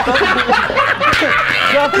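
Several men laughing together, overlapping one another, with bits of talk mixed into the laughter.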